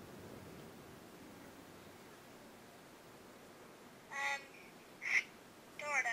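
A woman's voice coming faintly and tinnily through a smartphone's small loudspeaker over a VoIP video call: two or three short high-pitched utterances in the second half, after a quiet start.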